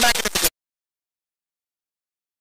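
A man's voice talking for about half a second, then the audio cuts off suddenly into complete digital silence.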